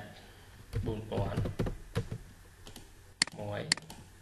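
Computer keyboard keys being typed, a few sharp key clicks in quick succession near the end, as an offset value is entered in AutoCAD.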